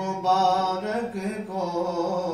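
Unaccompanied male voice reciting an Urdu naat, holding drawn-out notes that bend slowly in pitch.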